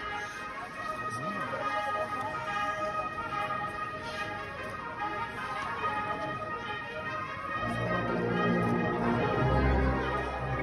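Processional band music with sustained chords over crowd voices. Deeper, louder low notes join about eight seconds in.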